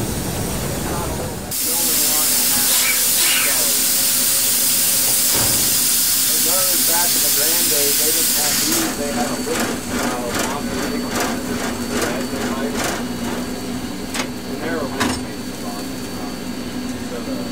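Cab of K-28 class 2-8-2 narrow gauge steam locomotive 473 under way: a loud steady hiss of escaping steam or air for about seven seconds, cutting off suddenly. After it the locomotive's running sound continues, with a steady hum and scattered sharp knocks and rattles in the cab.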